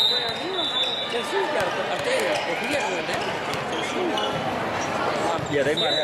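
Crowd noise of a busy indoor volleyball tournament hall: many overlapping voices and frequent volleyball thuds. A referee's whistle blows at the start and again just before the end.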